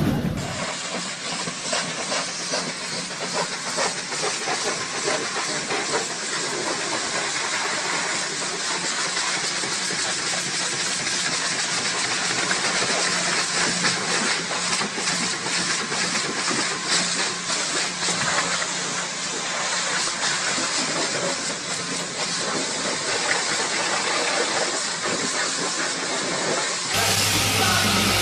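High-pressure washer wand spraying a car, a steady hiss of water jet and spray with a faint low hum underneath.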